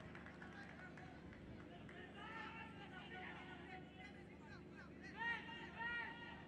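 Faint open-air football-ground ambience with distant voices calling and shouting, louder about five seconds in.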